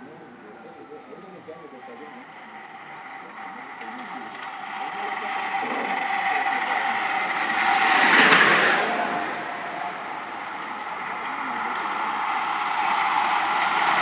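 Motor vehicle traffic on the race road, with engine and road noise building steadily. One vehicle passes close about eight seconds in, and the noise rises again near the end.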